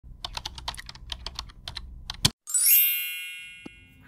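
Typing sound effect: a quick run of key clicks, about six or seven a second, ending in one louder stroke. After a brief pause a bright bell ding rings out and fades.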